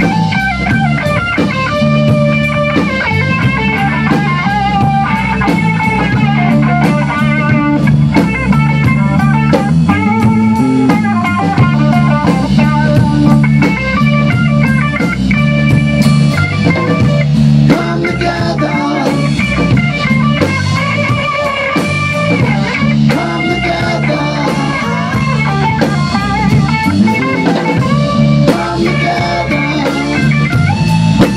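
A live rock band playing an instrumental blues-rock passage: electric guitar and bass guitar over a Tama drum kit, with evenly spaced cymbal ticks keeping the beat throughout.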